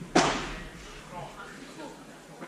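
A single sharp knock of a padel racket striking the ball just after the start, echoing briefly around the hall, followed by faint voices.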